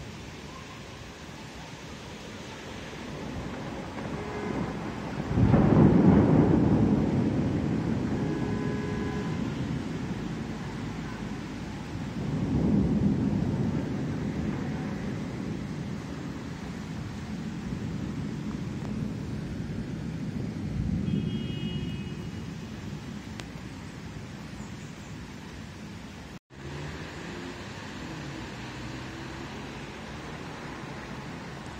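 Thunder rolling: a low rumble builds, then a loud clap breaks about five seconds in and rolls away slowly. Two fainter rolls of thunder follow, one about halfway through and a weaker one later.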